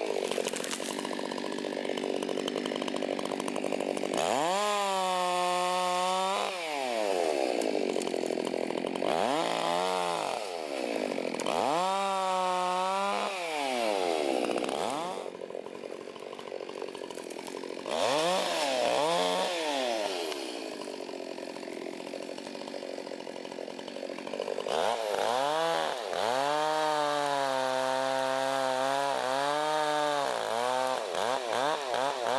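Gas chainsaw cutting through small trees: the engine revs up to full speed, holds through each cut and falls back to idle, about five times. The last cut is held longest, near the end.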